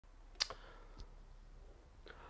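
A few faint clicks over quiet room tone: a sharp one about half a second in with a softer one right after it, and another faint one about a second in.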